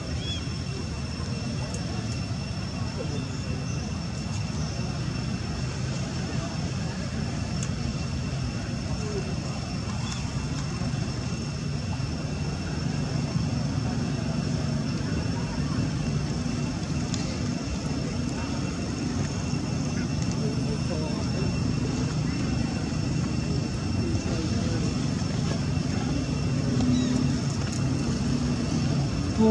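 Steady outdoor background: a constant low rumble like a distant engine, with indistinct voices and a thin, steady high-pitched tone running under it.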